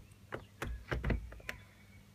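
A casement window being pulled shut and its lever handle worked: a string of light clicks and knocks from the frame and latch.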